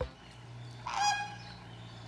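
A flamingo giving one short honk about a second in.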